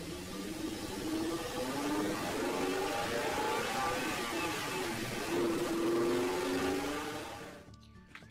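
Small toy car rolling down a plastic spiral ramp: a steady rolling rumble that fades out near the end. Light background music plays underneath.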